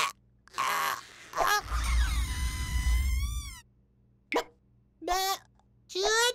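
Cartoon sound effects with the wordless, squeaky cries of a cartoon chick character: short clicks and squawks, a long held cry that wavers at its end over a low rumble, then a brief squeak near the end.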